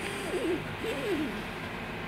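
Steady low room hum with two brief, quiet murmured vocal sounds from a woman, wavering in pitch, in the first second and a half.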